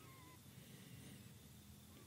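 Near silence: faint room tone in a pause of the talk, with a faint, short wavering chirp-like sound in the first half-second.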